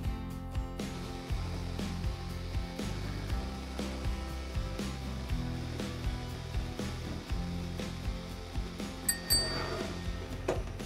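Background music with a steady beat, and two short high chiming notes just before the end.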